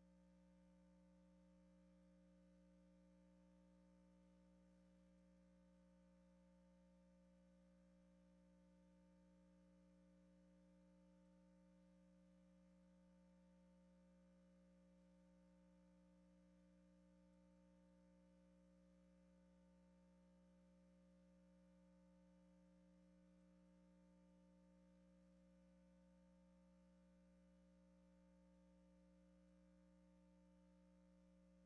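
Near silence: only a faint, steady hum of several constant tones that never changes.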